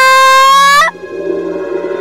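A high cartoon-style voice holding one long shout of "yeah!" that cuts off about a second in, followed by softer music-like tones.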